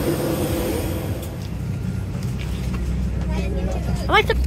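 Steady low drone of a parked Airbus A320 cabin's air and ventilation during boarding, with passengers' voices faintly underneath.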